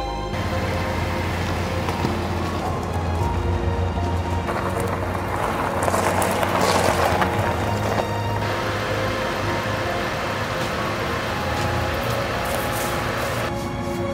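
Honda Civic sedan started with its push button, its engine running with a steady low rumble. The car then drives off, and its engine and tyre noise on gravel swell loudest about six to seven seconds in. Music comes back near the end.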